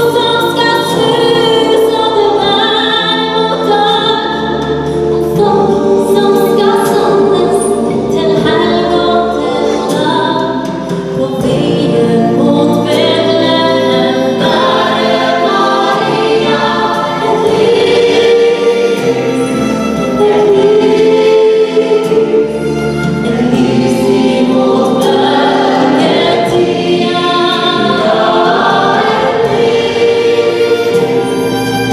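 Gospel choir singing in parts with a female soloist, backed by a live band with drums, on a song that carries on without a break.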